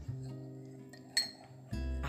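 A metal spoon clinks once against a ceramic teacup about a second in, with a short high ring. Acoustic guitar music plays underneath.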